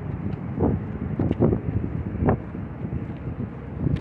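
Wind buffeting the phone's microphone in irregular gusts, over a steady low rumble of traffic on a busy road.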